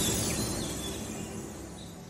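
The tail of a logo intro's ambient sound bed fading steadily out: an even rushing noise with a few faint, short bird chirps.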